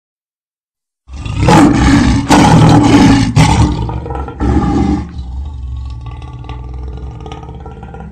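A lion roaring, loud with a deep rumble and several surges for about four seconds, then trailing off over the next three.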